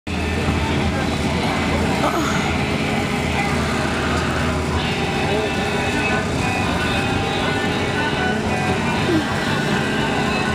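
Car engines running steadily, mixed with people talking and music.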